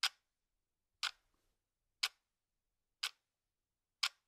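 A clock ticking steadily, one short, sharp tick a second, with silence between the ticks.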